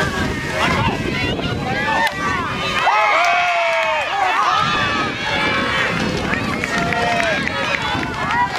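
Many high-pitched young voices shouting and calling over one another: baseball players and their team calling out on the field and from the bench.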